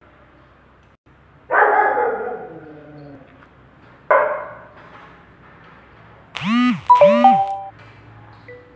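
A dog barking twice, each bark trailing off. Near the end come two quick swooping tones that rise and fall, then a few chime notes.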